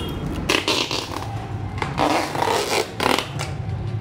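Packing tape being pulled off its roll in three short, rasping strips while bubble wrap and plastic film around a motorcycle are handled.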